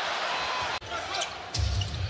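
Basketball arena sound on a game broadcast: steady crowd noise and court sounds. The sound breaks off abruptly a little under a second in, and a louder low rumble comes in near the end.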